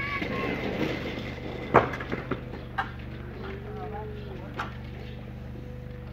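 Sharp knocks on a metal sliding barn door as it is pushed and struck to bend it back into shape: one loud knock just under two seconds in, then a few lighter ones, over a steady low hum.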